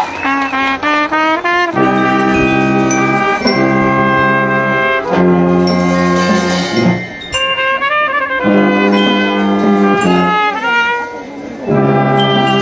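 Marching band brass section (trumpets, trombones and sousaphone) playing: a quick rising run of short notes, then loud held chords in short phrases separated by brief breaks.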